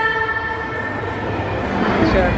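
A held chord of several steady tones that fades out about a second in, over a steady low background noise.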